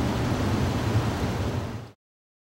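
Steady outdoor background noise with a low rumble, cutting off suddenly to silence just before the end.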